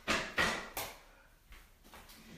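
A weight bench being dragged and set down on the gym floor: three short scraping knocks in the first second, each dying away.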